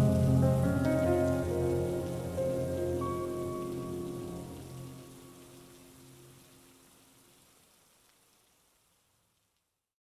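Rain sound effect, a steady hiss of falling rain, under the last long sustained notes of a slowed, reverb-heavy lofi song. Both fade out together to silence about nine seconds in.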